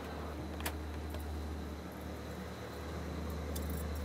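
Steady low drone of a fishing boat's engine, with a few light, sharp metallic clicks and jingles from fishing gear being handled on deck.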